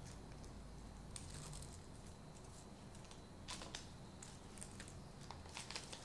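Faint, scattered crinkling and tearing of small paper-and-plastic medical packaging being handled and opened by hand, in short bursts about a second in, midway and near the end.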